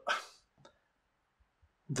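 A man's short breathy exhale just after a spoken word, then a pause of quiet room tone. A man's voice starts again near the end.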